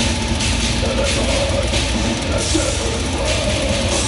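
Live heavy metal band playing loud: distorted electric guitar over a drum kit with steady cymbal hits.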